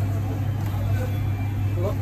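Steady low machine hum, with voices talking in the background.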